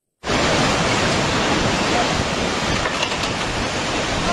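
Tsunami backwash: a loud, steady rush of seawater surging out through a flooded town, carrying debris. It starts abruptly after a split-second gap.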